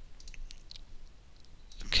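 A few faint computer mouse clicks, single short ticks spaced a fraction of a second apart.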